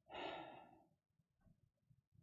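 A man sighing once, a breathy exhale of about half a second just after the start, followed by near silence.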